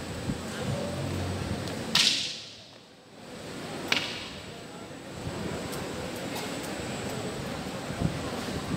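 A wooden walking cane swung and struck in a cane form: two sharp cracks about two seconds apart, the first the louder, the second as the cane's tip hits the floor.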